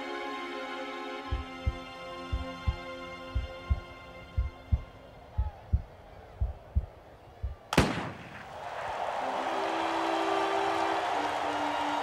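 Held music chords fade out while a heartbeat sound effect thumps in double beats about once a second. Then comes a single sharp crack of a starting pistol, followed by a swelling rush of noise under a held note.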